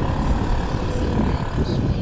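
Wind buffeting the camera microphone at riding speed, mixed with the running of a Honda CG 160 Fan motorcycle's single-cylinder engine; a steady, rough rumble.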